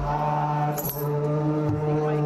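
A group of male voices chanting in unison on long held notes, in Ethiopian Orthodox liturgical chant, moving to a new note about halfway through.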